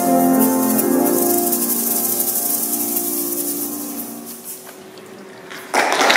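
Choir's final chord held and fading away over about four seconds, with hand shakers rattling over it. Applause breaks out suddenly near the end.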